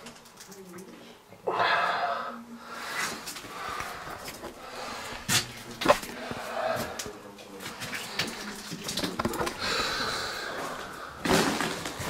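Faint, indistinct voices with scattered clicks and knocks, such as handling and footstep noise, in a small tiled room.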